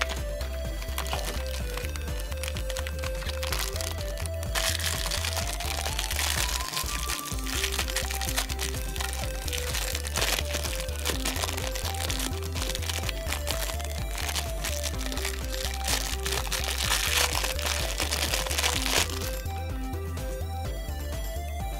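Thin clear plastic wrapper crinkling and crackling as hands tear it open, from about four seconds in until just before the end. Background music with a steady beat plays throughout.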